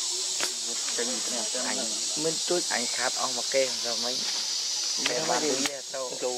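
Steady, high-pitched drone of forest insects, with people's voices talking quietly over it and a couple of sharp clicks, one about half a second in and one near the end.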